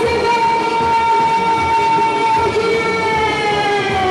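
Live samba-enredo: a man's amplified voice holds one long sung note over the steady drumbeat of a samba percussion section. The note sags slightly in pitch near the end.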